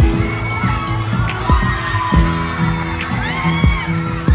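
Dance music with a steady beat playing over an audience shouting and cheering, with loud high shouts about half a second in and again near three seconds.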